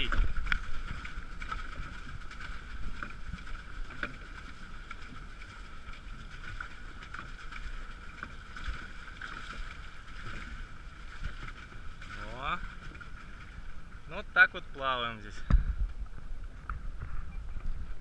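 Pedal catamaran being pedalled across choppy sea: water washing against the hulls, with a steady high whine underneath. A low thump comes near the end.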